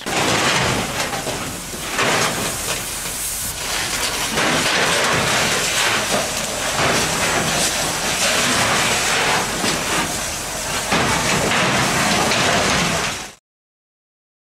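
Fire hose spraying water into a burning outbuilding: a loud, steady hiss of spray that swells and eases. It cuts off suddenly near the end.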